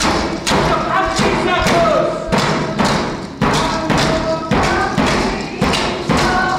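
Music: a drum beating steadily about twice a second under singing voices.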